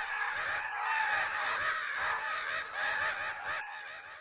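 A flock of birds calling, many short calls overlapping, dying away at the end.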